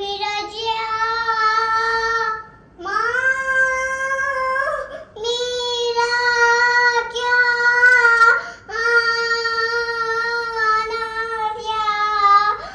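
A young girl singing long, drawn-out notes in a high voice, the syllables stretched out ("Mera kyaaaa", "Aanaa yaaaa"). She sings in about four phrases with short breaks for breath, and the second phrase begins with a rising slide in pitch.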